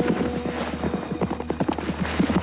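A horse's hooves galloping on ground, a rapid, uneven run of beats, over low sustained music.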